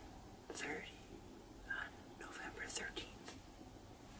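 A person whispering a few short phrases, with hissing s-sounds.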